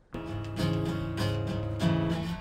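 Background music: an acoustic guitar playing plucked chords that start a moment after a brief pause.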